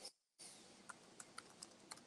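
Faint keystrokes on a computer keyboard, irregular single taps as a short phrase is typed. The sound cuts out completely for about a third of a second just after the start.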